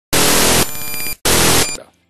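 Two loud bursts of harsh, static-like electronic noise with steady high tones in them. The first lasts about a second and the second is shorter and fades out.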